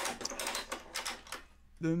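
Ratchet strap tensioner clicking rapidly, about five clicks a second, as its handle is pumped to wind the strap that drags the etching press roller over the plate; the clicking stops about a second and a half in.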